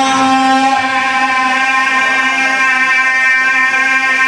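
A man's voice holding one long, steady sung note, amplified through microphones, in a chanted majlis recitation.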